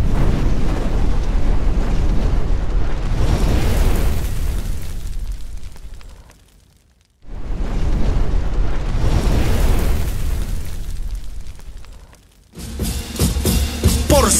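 Two deep, noisy fire-and-explosion sound effects for a flaming logo animation, each swelling up and fading out over about six seconds. Music begins shortly before the end.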